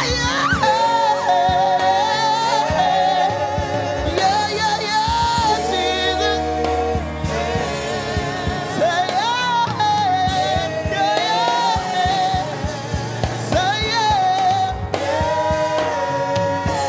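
Gospel praise team singing a worship song with live instrumental accompaniment. Several voices, led by a woman, hold and bend long notes over a steady beat.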